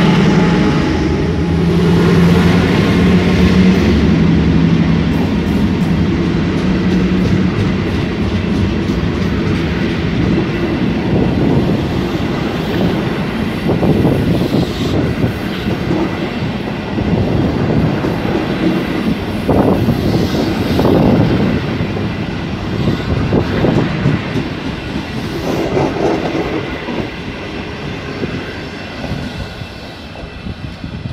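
CRRC CKD8G diesel-electric locomotive running as it passes, its engine note giving way after several seconds to the passenger coaches rolling by with wheels clacking over the rail joints, the sound fading toward the end.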